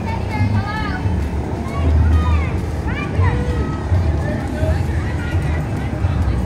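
Music playing from a passing parade float, over people's voices calling and whooping, with the low rumble of the pickup truck towing the float.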